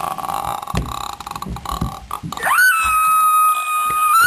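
A person's voice making rough, croaky noises, then a loud high-pitched held note that slides up, stays level for about two seconds and drops away at the end.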